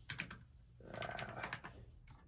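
Quick keystrokes on a computer keyboard in the first half-second, followed about a second in by a brief, soft murmur of a voice.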